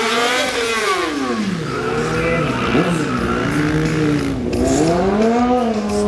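Quad bike engine revving up and down in long swells as it is ridden on two wheels: it climbs to a peak at the start, drops to a low, uneven run for a couple of seconds, then climbs again near the end.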